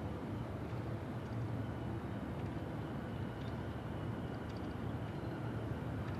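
Open-air hush of a crowd keeping a two-minute silence: a steady low rumble of background hum with no voices.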